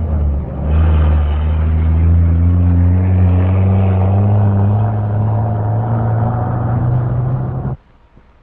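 Tractor-trailer truck engine pulling away, its low note rising slowly as it gathers speed, then cutting off suddenly just before the end.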